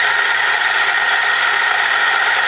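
Nuova Simonelli Grinta electric burr grinder running steadily, grinding coffee into a portafilter, with a steady high whine over the grinding noise. It is purging the stale grounds left between the burrs after a change to a finer setting.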